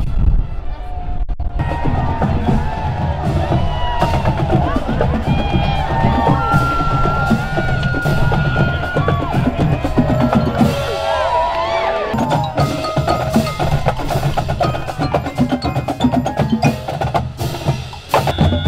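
Marching band playing: brass holding a melody over bass and snare drums, starting a second or two in.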